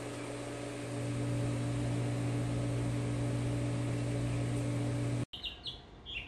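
Steady machine hum with a low drone, stopping abruptly about five seconds in; after it, songbirds chirp in short, repeated high notes.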